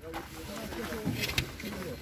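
Faint voices of people talking in the background, with a couple of light knocks about a second in.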